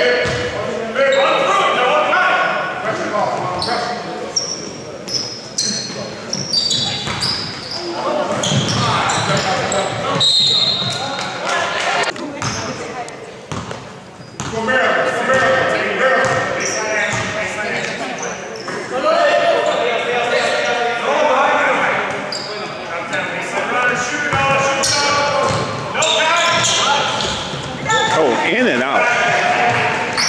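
A basketball being dribbled on a hardwood gym floor during play, with voices calling and talking, echoing in a large gymnasium.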